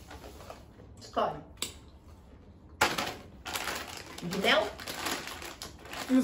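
Plastic snack bags crinkling and rustling as they are handled, loudest in a sharp crackle about three seconds in.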